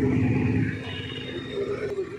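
A two-wheeler's engine running steadily with a low hum, dropping noticeably in level about two-thirds of a second in.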